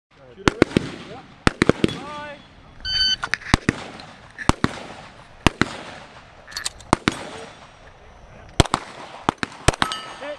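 Handgun shots fired in quick succession, mostly as double taps a fraction of a second apart, at a steady pace throughout. A short electronic beep comes about three seconds in.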